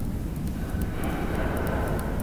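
Steady low background rumble, with faint light ticks of a stylus tapping dots onto a tablet screen.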